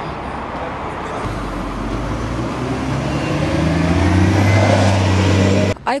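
City bus engine running amid street noise. From about a second in, its low note climbs and grows louder as the bus pulls away from the stop, then cuts off suddenly near the end.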